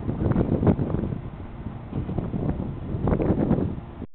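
Wind buffeting the microphone in uneven gusts, a low rumble that rises and falls, with a stronger gust about three seconds in.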